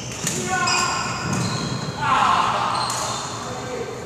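Badminton rally in a large echoing hall: several sharp racket hits on the shuttlecock and high squeaks of court shoes on the wooden floor, with a player's voice calling out about two seconds in.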